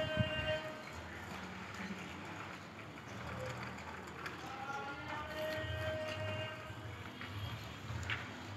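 A voice calling out in long held notes twice, each call a short higher note followed by a longer lower one, over a faint low rumble.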